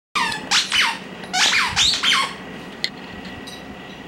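A squeaky dog toy squeezed in a Pembroke Welsh Corgi's jaws, giving a quick run of about six squeaks that slide up and down in pitch over the first two seconds or so. A single click follows near the three-second mark.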